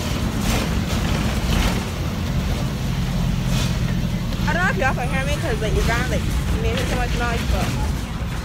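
Steady low rumble of a city bus's engine and running gear, heard from inside the passenger cabin, with a few brief clicks in the first half.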